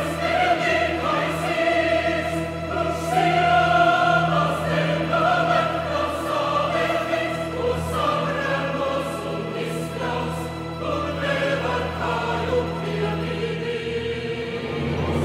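Mixed choir singing slow, sustained chords with a string orchestra, over a steady low held bass note.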